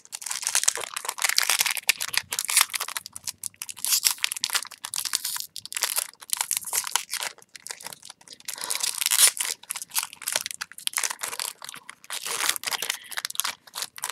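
Foil wrapper of a Yu-Gi-Oh booster pack being torn open and crinkled by hand: a run of irregular crinkles and tearing crackles.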